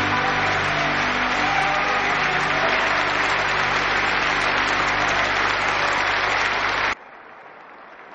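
Audience applause following the close of the song, with the last held notes of the accompaniment dying away in the first couple of seconds. The applause cuts off abruptly about seven seconds in, leaving only a faint hiss.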